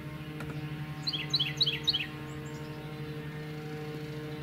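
A songbird singing a short run of about six quick, high, down-slurred notes about a second in, over a steady low hum.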